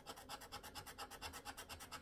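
Metal-tipped scratcher rubbing the coating off a paper scratch-off lottery ticket in quick, even back-and-forth strokes, about eight a second.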